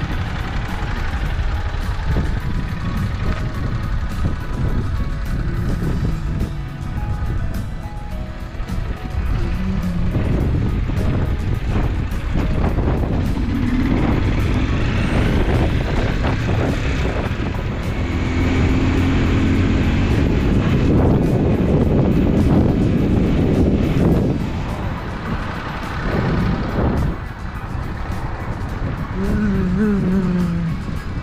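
Motorcycle riding noise: a steady low rumble of engine and wind on the microphone, with background music over it, most clearly through the middle stretch.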